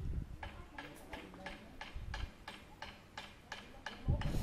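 Rapid, even ticking, about five ticks a second, over a low rumble.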